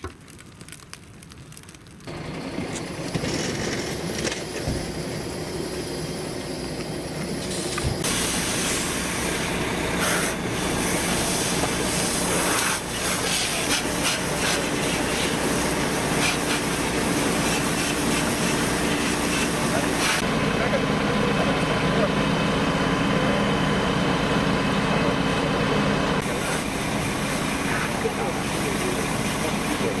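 A car fire crackling faintly for about two seconds, then a fire hose jet spraying water onto the burning Ford Focus, hissing with steam, over the steady running of a fire engine.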